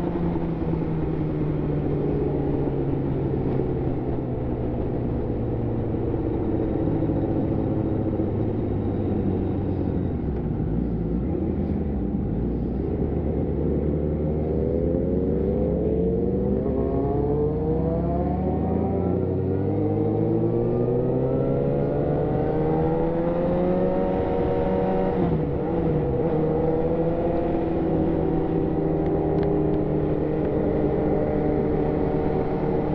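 Yamaha FZ1's inline-four engine under way: its pitch falls steadily for the first ten seconds as it slows, then climbs again from about halfway as it accelerates, with a brief dip near the end.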